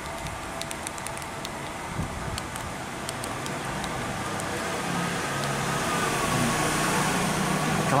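Light plastic clicks of a feature phone's keypad buttons being pressed, a few at a time in the first seconds. Under them a low, steady engine hum grows louder through the second half.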